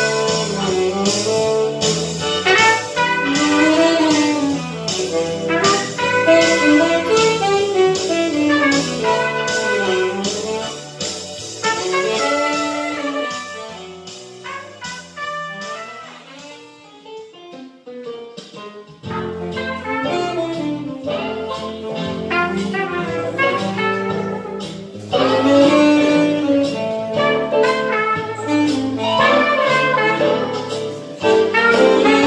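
Saxophone and trumpet playing a jazzy instrumental passage over a steady beat. About halfway through the music thins out and softens for a few seconds, then comes back in full.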